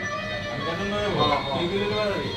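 Acoustic guitar playing softly, with voices faint beneath it.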